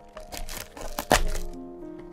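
Cardboard retail box of a Logitech K380 keyboard being torn open at its pull tab: a few short crackles, then one sharp crack about a second in, over soft background music.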